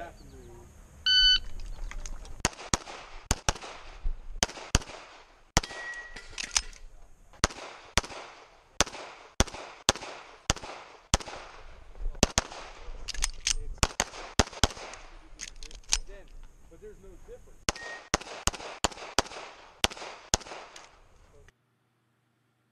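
Electronic shot-timer start beep about a second in, then a Sig Sauer 1911 MAX pistol firing .40 S&W major loads, the shots mostly in quick pairs and broken by several short pauses for reloads and movement. The last shot comes about half a second before the end.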